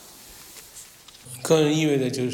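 Faint, soft scratching of a paintbrush stroking across a plastered wall. About a second in, a man's voice starts speaking and covers it.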